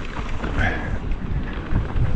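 Wind buffeting the microphone and tyres rumbling over a dirt trail as a mountain bike is ridden fast downhill. A brief high squeak comes about half a second in.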